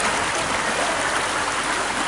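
Water from a broken water main surging up through cracked street pavement: a loud, steady rushing that begins suddenly.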